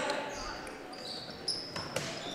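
Volleyball players' sneakers squeaking on a hardwood gym court during a rally, with a sharp slap of the ball near the end.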